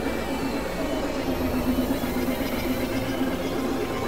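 Electronic synthesizer drone: a dense, steady bed of sustained tones over a low rumble, with a wavering tone in the middle range and a thin high whistle that comes in for a second or so near the middle.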